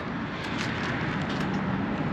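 Steady hum of road traffic, with a few faint ticks over it.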